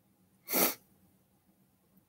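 A woman's single short, sharp burst of breath about half a second in, forced out like a sneeze, with faint room tone around it.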